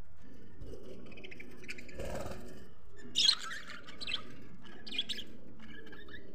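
A flock of budgerigars chirping and chattering together, with a sharp burst of loud calls about halfway through and another shorter one near the end.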